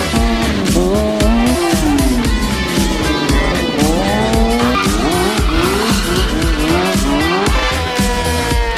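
Sportbike engines revving up and down at high rpm, with tyre squeal from a burnout, mixed with background music with a steady beat.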